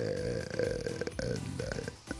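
A man's voice hesitating on a drawn-out Tunisian Arabic 'el… el…': one held syllable for about a second that sinks into a low, creaky rattle of the voice.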